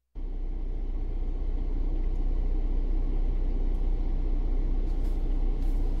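Steady low rumble and hiss inside a parked car's cabin, cutting in abruptly at the start, with a few faint clicks near the end.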